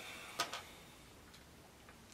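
Small clicks of a miniature wooden box accessory being picked up off a figure's plastic display base: one sharp click about half a second in, a softer one right after, and a couple of faint ticks later.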